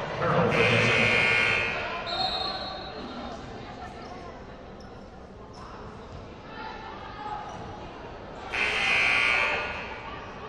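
Gym buzzer sounding twice, a long blast about half a second in and another near the end, echoing in a large hall over crowd voices.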